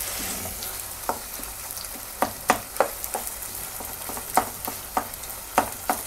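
Potato frying in ghee in a pan, a steady low sizzle, while a wooden spoon stirs it, with scattered sharp knocks of the spoon against the pan.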